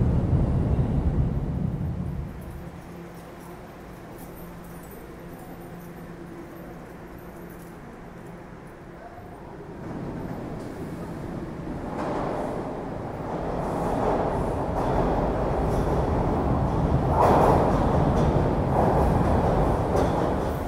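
Toronto TTC subway train running. The rumble is loud for the first couple of seconds, drops to a lower, steadier level, then builds up again from about halfway through.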